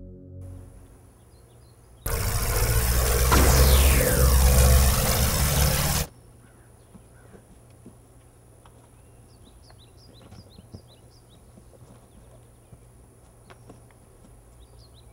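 A loud rocket-like rushing roar with a falling whistle through it lasts about four seconds and cuts off suddenly. It gives way to quiet outdoor ambience with birds chirping.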